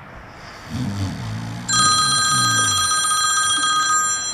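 A phone ringing: a loud, bright electronic ringtone with a rapid trill that starts a little before halfway and keeps going. Under its start, a sleeper's low snore.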